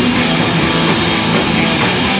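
Live heavy rock band playing loud, with electric guitars, bass guitar and drum kit together.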